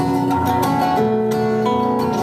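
Live acoustic guitar and a second stringed instrument playing an instrumental passage of a folk song, with held notes that change pitch a few times.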